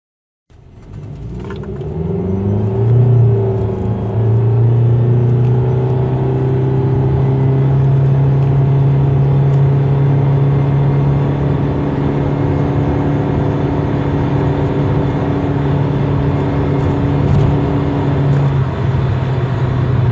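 Saipa Quick's engine heard from inside the cabin under full acceleration from a standstill in sport mode, on a 0–100 km/h run. The revs climb over the first few seconds, then the engine note holds at a steady pitch while the car keeps gaining speed, and it shifts near the end.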